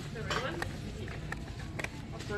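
A brief indistinct voice over a steady store background hum, with a few sharp light clicks and taps as a small cardboard cosmetics box is handled at a display shelf.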